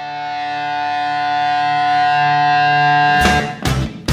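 Opening of a rock song: a held guitar chord swells steadily louder, then a little over three seconds in the drums and full band come in with a beat of about two hits a second.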